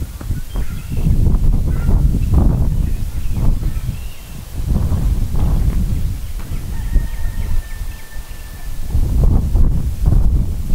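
Wind buffeting the microphone in gusts, with a few faint short calls in the background and a thin steady tone for about a second and a half near the end.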